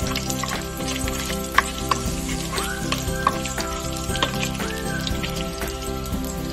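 Diced meat sizzling in a nonstick wok, stirred with a spatula that clicks against the pan now and then. Background music plays over it.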